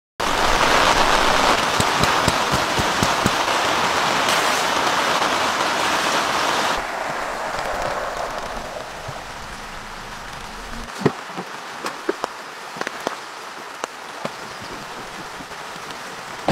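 Rain falling steadily, loud at first, then a sudden drop to lighter rain about seven seconds in, with scattered sharp drips and taps near the end.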